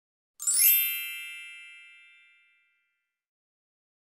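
A chime sound effect: a quick shimmering run of high bell tones that rings out and fades away over about two seconds.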